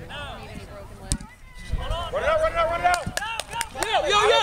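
Players' voices calling out across an open kickball field, drawn-out shouts from about halfway through. A single sharp knock about a second in.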